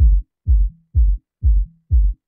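Ableton Live 10 Drum Buss 'Boom' bass auditioned on its own through its headphone button: a short, deep, pitched bass thump on each kick, two a second, each dying away quickly.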